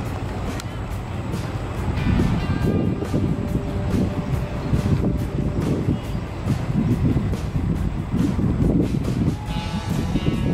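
Outdoor stadium background with a steady low rumble of wind on the microphone and faint distant voices calling out, a little clearer near the end.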